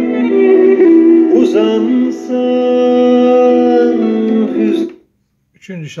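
Music with guitar playing from a Sony CFD-S03CP portable CD/MP3 boombox's speakers, cutting off suddenly about five seconds in as the player skips to the next track, followed by a brief silence.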